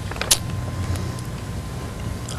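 Room tone: a steady low hum, with a brief faint hiss about a third of a second in.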